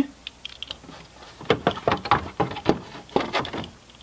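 A run of light, irregular clicks and taps, most of them in the second half, as a car's plastic rear light unit is worked out of its mounting with a screwdriver once its two fixing screws are out.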